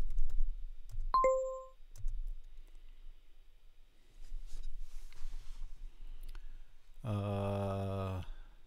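Computer keyboard typing at the start, then a single short electronic chime about a second in as the language-learning app checks the typed answer. Near the end, a low voice is held for about a second.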